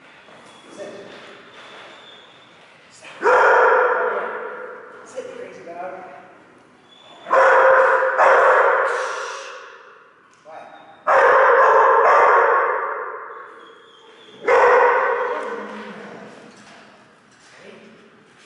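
A dog barking loudly in four bursts about three to four seconds apart, each echoing for a couple of seconds in a large hall.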